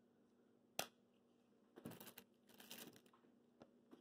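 Faint handling noises: a single sharp click about a second in, then two short spells of soft rustling and clicking around the middle, from a trading card in a clear plastic holder being handled.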